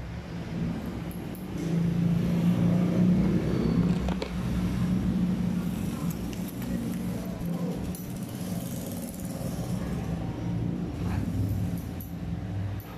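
A steady low motor hum, loudest from about two to five seconds in and then easing off a little.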